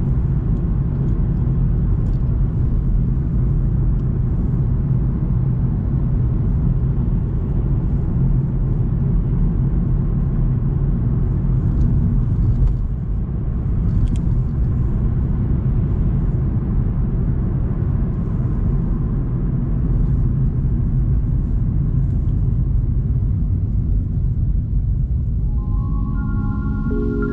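Steady, low-pitched road and engine noise of a car heard from inside the cabin while driving at street speed.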